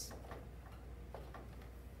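A few faint, irregular ticks over a low steady hum in a quiet room.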